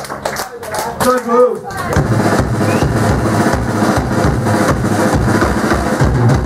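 Punk band live: a short shout from the singer into the microphone, then about two seconds in the band kicks in loud, with fast, pounding drums under distorted noise.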